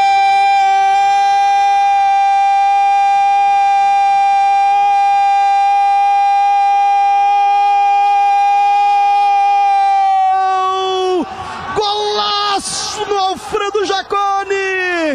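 Radio football narrator's long goal cry, a single shouted note held steady for about ten seconds. Near the end it breaks into shorter shouts that fall in pitch. It celebrates a goal just scored.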